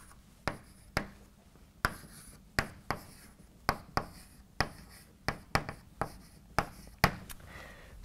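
Chalk writing on a blackboard: a string of sharp, irregular taps, about two a second, as the chalk strikes and scratches the board, with faint scraping between.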